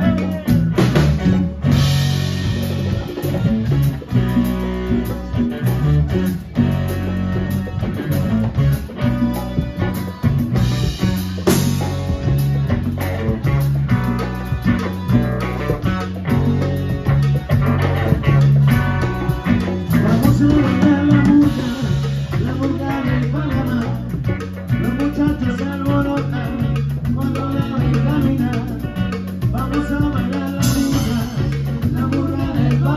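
Live salsa band playing an instrumental passage: electric bass, drum kit, congas and timbales, keyboard and electric guitar.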